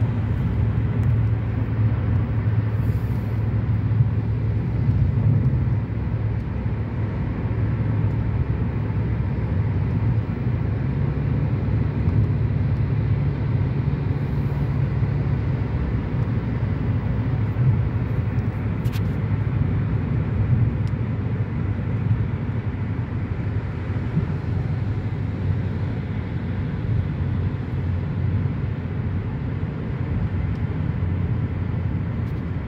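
Steady cabin road noise of a car driving at highway speed on wet pavement: a continuous low rumble from engine and tyres with a lighter hiss above it. A single faint tick comes about 19 seconds in.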